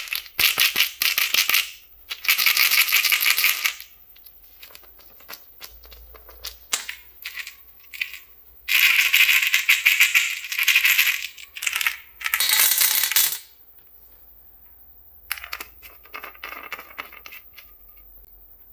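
Jelly beans rattling inside a small clear plastic candy bottle as it is shaken, in four loud bursts of rapid clicking with scattered single clicks between and a fainter burst near the end.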